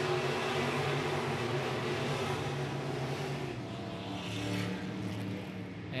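The V8 engines of several IMCA Northern Sport Mod dirt-track race cars running together on the track, a steady engine drone that dips slightly about four seconds in.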